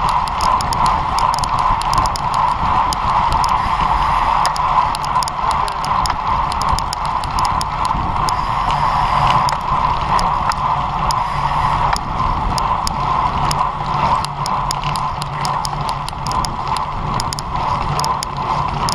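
Road bike riding on tarmac heard from a bike-mounted action camera: steady wind and tyre noise, with many quick, irregular clicks and ticks over it.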